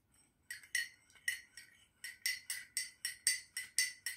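A metal teaspoon stirring a drink in a ceramic mug, clinking against the inside of the mug about four times a second with a bright ring. The clinking starts about half a second in.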